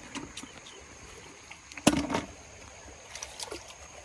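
Shallow stream water sloshing and splashing lightly as hands move through it and pick snails out, with a few small clicks and one sharp knock or splash about two seconds in.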